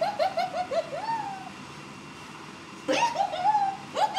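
A woman laughing: a quick high run of 'ha' syllables in the first second, then another burst of laughter about three seconds in.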